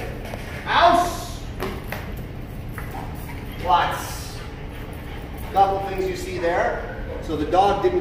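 A man's short spoken commands to a dog, with a few light metallic clinks from the dog's chain leash and prong collar.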